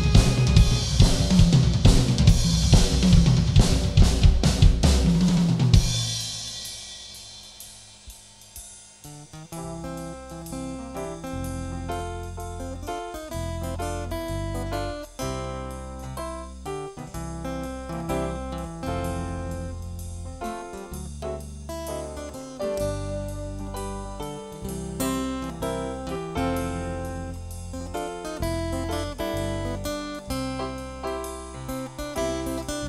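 Live drum kit playing hard with cymbals, snare and bass drum for about six seconds, then dying away. After a short lull, an instrumental passage of steady strummed chords with sustained low bass notes, with no singing.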